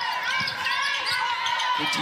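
A basketball being dribbled on a hardwood court, several bounces in a row, over the hubbub of an arena during live play.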